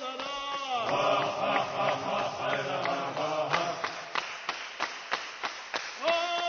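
Closing music of chanted singing, the voice sliding between long held notes. About halfway through it gives way to a quick run of sharp percussive strikes, about five a second.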